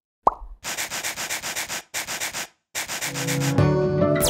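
Cartoon sound effects: a short pop with a falling pitch, then a quick run of scratchy strokes, about six a second, in three spurts with brief breaks. Music with plucked guitar notes comes in near the end.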